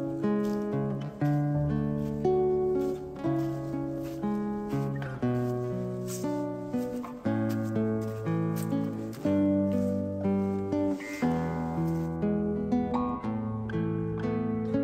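Background music on plucked strings, guitar-like: a melody of single notes over bass notes, each note picked sharply and dying away.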